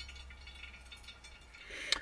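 A thin stream of hot water poured slowly from a gooseneck kettle into a pour-over coffee dripper, with a few small clinks near the end.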